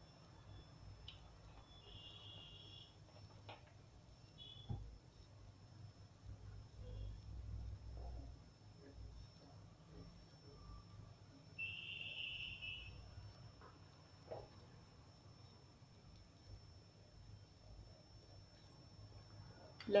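Quiet kitchen room tone with a faint low hum and a few soft knocks, broken by two short, high-pitched beeps: a faint one about two seconds in and a clearer one about twelve seconds in.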